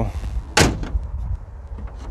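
GMC Yukon's hood being shut: one sharp slam about half a second in, over a low rumble.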